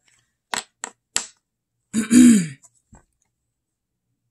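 Three quick, light snaps of tarot cards being flicked and laid on a table. About two seconds in comes a short throat-clear, the loudest sound.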